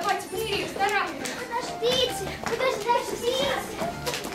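A young girl's voice speaking in short, high-pitched phrases.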